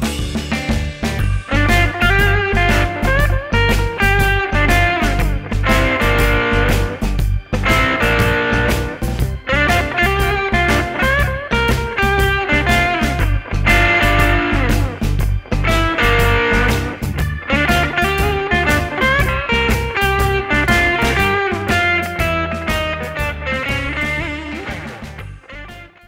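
Fender Telecaster electric guitar playing a blues solo in G over a backing track with a steady drum beat and bass. One lick is reused and ended on the root note of each chord in turn. The music fades out near the end.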